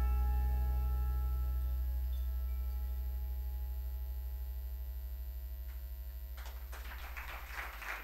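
Closing low chord on an electric stage keyboard ringing out and slowly fading, with a slight pulsing in its level. Audience applause starts about six and a half seconds in and grows toward the end.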